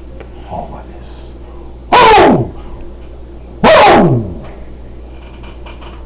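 Two loud vocal cries, each falling steeply in pitch and distorted by clipping, about a second and a half apart.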